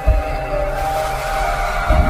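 Intro music for a logo animation: held, sustained tones with a deep booming hit near the start and another near the end, and a swelling whoosh between them.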